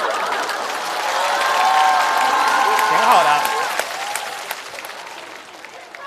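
Studio audience applauding, with some voices rising over the clapping in the middle. The applause fades away over the last two seconds.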